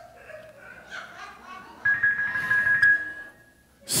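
Korg Krome EX keyboard playing soft organ-style fill notes under a sermon, settling into one high note held for about two seconds before it stops.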